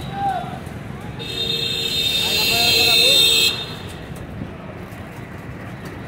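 Busy street traffic with a vehicle horn held for about two seconds, starting about a second in and cutting off sharply.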